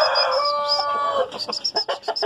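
A rooster crowing: the held final note of one long crow, ending a little over a second in, followed by a quick run of short high chirps.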